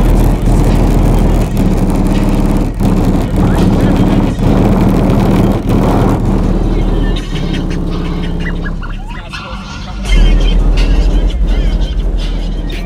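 Car audio system with four American Bass XR 12-inch subwoofers in a fourth-order box, playing bass-heavy music loud, heard from outside the SUV. It drops quieter for a few seconds about two-thirds of the way through, then the deep bass comes back strong near the end.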